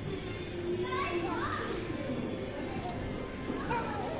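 Children playing and chattering in an indoor play area, a steady hubbub of young voices with a few higher calls rising and falling, about a second in and again near the end.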